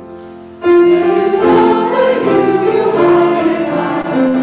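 Mixed church choir singing with grand piano accompaniment. A quiet held chord fades for about half a second, then the choir and piano come in loudly together.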